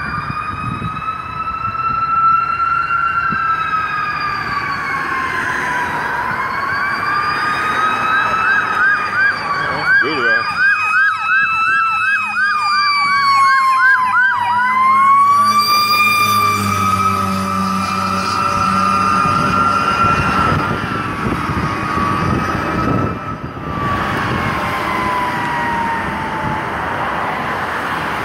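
Emergency vehicle sirens passing: a slow wail rising and falling, with a fast yelp of about three sweeps a second laid over it for about seven seconds in the middle.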